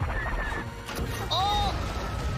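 Starfighter space-battle sound effects: a deep engine rumble that comes in abruptly, with a short arching tone, rising and then falling, about a second and a half in.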